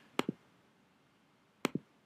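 Computer mouse button clicking: two quick double clicks about a second and a half apart, the clicks that advance a presentation slide.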